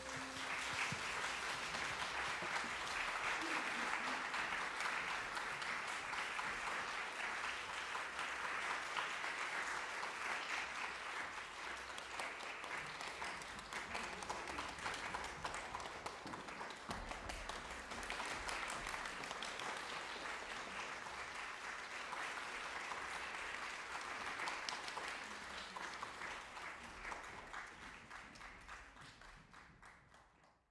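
Concert audience applauding steadily, fading away over the last few seconds.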